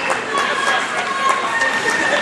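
Ice hockey play with skates scraping and sticks and puck clacking on the ice in short clicks, under spectators' voices calling out.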